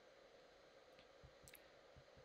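Near silence: faint room tone with a few faint clicks about a second in.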